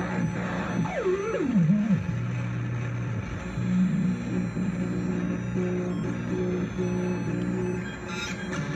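Modular synthesizer patch: a Doepfer A-196 phase-locked loop lead tracking divided-down clock signals, over sustained low drone tones run through a Memory Man delay. About a second in, the lead glides steeply down in pitch with a wobble, then settles into stepped notes over the steady low tones.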